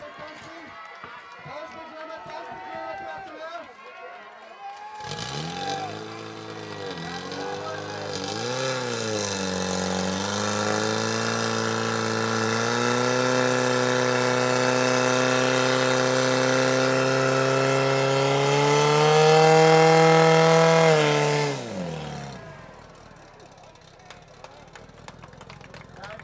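Portable fire pump's petrol engine starting and revving unevenly, then holding a steady high-revving note that climbs slowly while it drives water out through the attack hoses. Near the end it winds down quickly and stops.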